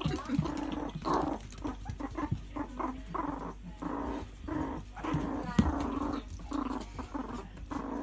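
Meerkat growling in short, rough, repeated bursts while guarding a food scrap. A single sharp knock comes a little past halfway.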